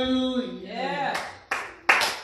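A man's voice holds a sung note that ends about half a second in and then glides briefly, followed by hand clapping that starts about a second in, in an even rhythm of about three claps a second.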